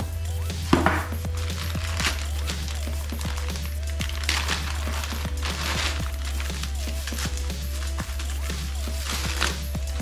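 Background music with a steady bass line and a simple stepping melody, over bursts of crinkling and rustling from bubble wrap and a plastic bag being handled and pulled open.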